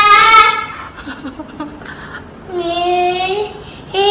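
A toddler's drawn-out, sing-song vocal calls: one long held note that fades about half a second in, and a second, lower held call about two and a half seconds in.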